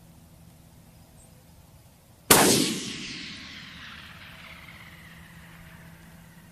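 A single shot from a 6mm Creedmoor bolt-action rifle about two seconds in, with the report echoing and fading away over the following few seconds.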